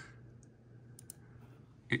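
Two faint, quick computer mouse clicks close together about a second in, choosing Quit from an app's right-click menu in the system tray.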